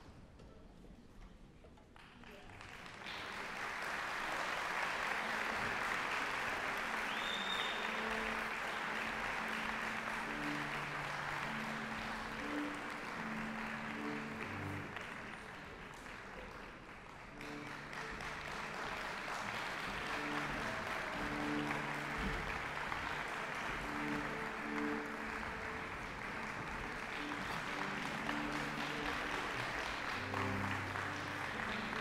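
Audience applause that starts a couple of seconds in and eases briefly around the middle, over a youth symphony orchestra that keeps playing held notes underneath.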